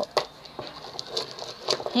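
Handling noise of a hand-held rock: one sharp click near the start, then light, scattered ticks and taps as the stone with a magnet stuck to it is turned in the hand.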